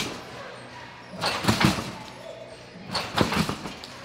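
A gymnast bouncing on a trampoline: two landings on the bed, each a sudden thump with a brief spring rattle, about two seconds apart.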